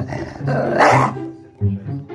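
Jack Russell terrier guarding a treat, growling and then letting out one loud snarl about half a second in that lasts about half a second. Background music with a steady low beat plays underneath.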